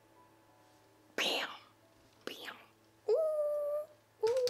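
A woman's voice: two short, breathy whispered exclamations, then a held "ooh" of a little under a second near the end.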